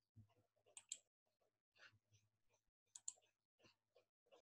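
Near silence with a scatter of faint clicks and a faint low hum.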